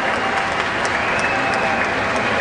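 Audience applauding steadily, a dense patter of many hands, with voices in the crowd behind it.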